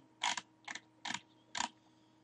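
Computer mouse scroll wheel rolled in four quick strokes about half a second apart, each a short burst of ratcheting clicks, as a web page is scrolled up.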